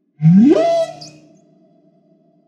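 An electronic transition sound effect that starts suddenly and sweeps sharply upward in pitch over about half a second, then holds one steady tone that fades slowly.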